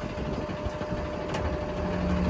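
Cummins diesel engine of a Ford F750 bucket truck idling steadily, with a thin steady hum over the low rumble. A single light click about halfway through.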